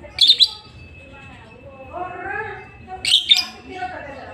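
Lovebird giving short, shrill chirps in two quick bursts, one just after the start and one about three seconds in.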